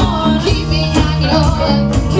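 Live rock band: female vocalists singing into microphones over electric guitar, bass guitar and a drum kit keeping a steady beat.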